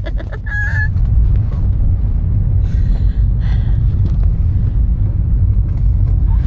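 Steady low cabin rumble of a car rolling slowly along a dirt road. About half a second in there is a short, flat, high beep.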